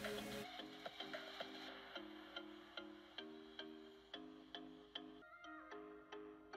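Quiet instrumental background music: short held notes changing in a repeating pattern over a light, evenly spaced ticking beat.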